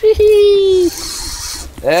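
A person's drawn-out, high-pitched exclamation lasting just under a second, its pitch sinking slightly, then another voice starts up near the end.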